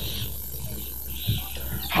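A pause in a man's amplified talk, leaving the steady low hum and hiss of the sound system and recording. There is a faint short sound about a second and a quarter in.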